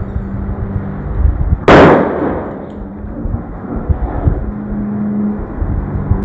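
A latex balloon being blown up by mouth bursts from over-inflation with a single loud bang about two seconds in.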